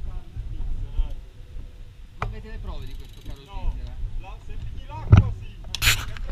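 Faint, indistinct talk among a group of people, over a steady low rumble on the microphone. A sharp click about two seconds in and a short, loud rustling burst near the end.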